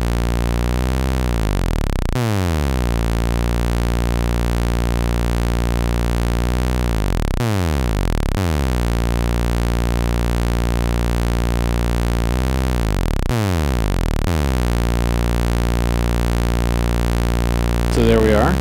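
Doepfer A-110 analog oscillator playing a low, buzzy sustained tone. Its pitch swoops three times, about six seconds apart, as a slow LFO swells the modulation depth through an A-131 exponential VCA.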